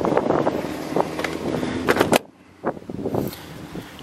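Plastic clicking and rattling as an ATV's seat and body panels are pressed back into their clips, with a louder snap about two seconds in as the seat latches. A few faint clicks follow.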